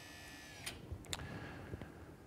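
A couple of faint light clicks over low room tone as the soft-seat wheelchair lifting device is handled.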